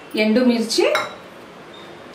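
A woman's voice speaking for about a second, then low room tone.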